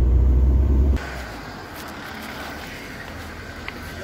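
Low rumble of a moving car heard from inside the cabin, cut off abruptly about a second in. After it comes a much quieter steady background hiss with a few faint clicks.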